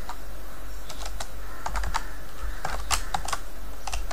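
Computer keyboard being typed on: short runs of key clicks, a few keystrokes at a time with gaps between, over a steady low hum.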